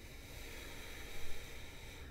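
A slow, faint inhale through the nose, a soft steady hiss that swells slightly past the middle.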